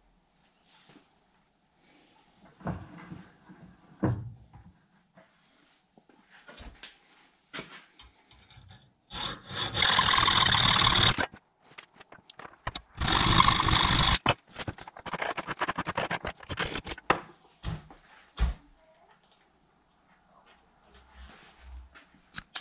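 A power tool runs in two bursts of about two seconds each, a steady rush with a high whine, about halfway through. Before and after them come bench-vice handling clicks and a run of short scraping strokes as a home-made battery earth cable is finished.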